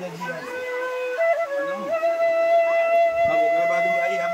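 Bansuri (side-blown bamboo flute) playing a slow melody: a held note, a step up in pitch after about a second, then a long steady higher note from about halfway through.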